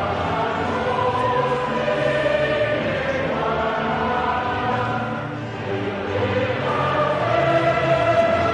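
Choral music: a choir singing long held chords. It dips a little past halfway and swells again near the end.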